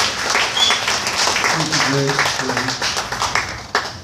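A congregation applauding in dense clapping, with a few voices calling out about halfway through. The clapping dies down near the end.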